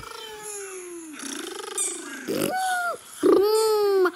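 A baby fussing: a run of drawn-out, whiny vocal sounds, one falling, one arching, one rising, with the loudest and longest in the last second.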